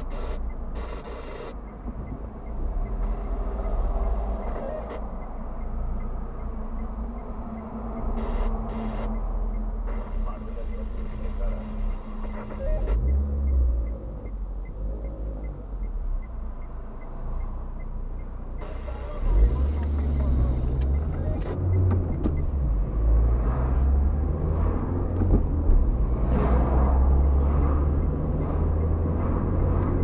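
Car cabin noise: the engine idles while the car stands still, then about 19 seconds in the low rumble of engine and tyres grows louder as the car pulls away and drives on.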